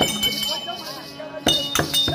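Folk-drama accompaniment of drum strokes and ringing metal cymbals dies away into a brief lull, then starts again with a sharp drum stroke about a second and a half in.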